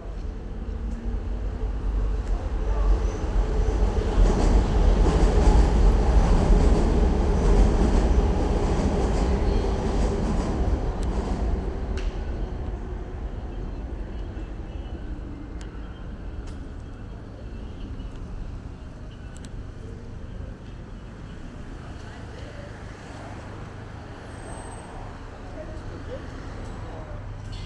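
Elevated subway train passing overhead on the steel elevated structure: a low rumble that builds over a few seconds, is loudest about five to eight seconds in with a steady hum inside it, and dies away by about fourteen seconds in, leaving street noise.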